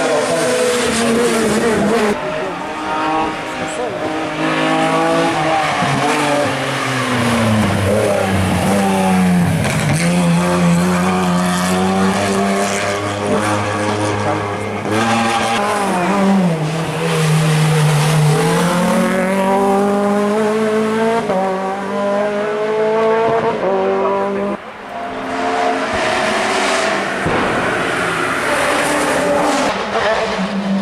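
Competition car engines revving hard on a hillclimb, the pitch climbing through the gears and dropping off for corners again and again. A Peugeot 208 rally car comes first; after a brief break about three-quarters of the way in, a prototype sports racer revs high.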